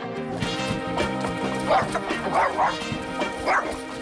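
A dog barking a few times over background music, the barks in the second half.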